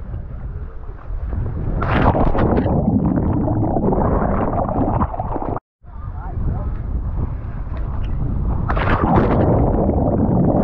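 Pier jump into the sea heard on a helmet- or body-worn action camera: wind on the microphone, then a loud splash about two seconds in followed by churning water and bubbles. After a brief break the same comes again, with a second splash near the end.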